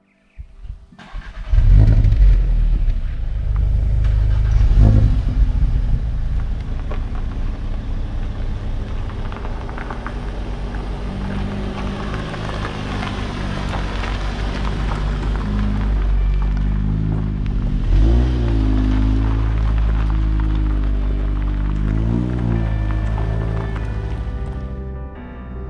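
Audi S3 turbocharged four-cylinder engines running as the cars drive slowly across a gravel car park, with tyre crunch on the gravel. Twice in the last part the revs rise and fall briefly.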